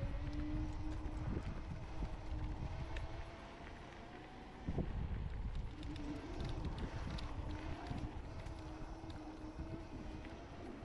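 Kaabo Mantis 10 Pro electric scooter's dual hub motors whining steadily under load while the tyres rumble and the scooter rattles over a rough, sandy trail. The ride goes quieter for about a second just before a sharp knock near the middle, then the whine and rattling pick up again.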